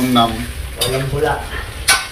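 Pork skin chicharon sizzling as it fries in oil in a wok, stirred with a utensil, with a sharp clank of the utensil on the pan near the end.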